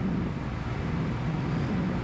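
Steady low rumble of passing cargo vessels' engines, with a faint hum underneath.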